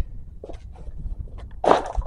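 Handling of a rooftop tent's cardboard and plastic packaging: faint clicks and rustles, with one short, louder scrape or rustle near the end, over a low rumble.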